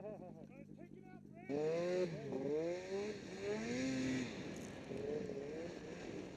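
Snowmobile engine opening up sharply about a second and a half in, its pitch rising and falling as the throttle is worked to pull away through deep snow, then settling lower.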